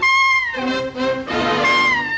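Jazz trumpet playing a high held note that falls away after about half a second, with lower band figures in between. Another high note begins near the end. The sound is from an old film soundtrack with a cut-off top end.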